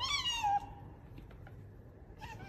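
A domestic tabby cat meows once, a short meow that rises and then falls in pitch.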